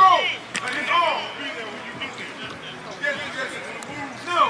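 Coaches and players shouting on a football practice field: short yells that fall in pitch, one right at the start and another about a second in, with a sharp knock about half a second in.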